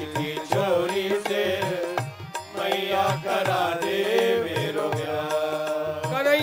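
Live devotional Krishna bhajan music: a melody with sliding, wavering pitch over a steady run of hand-drum strokes.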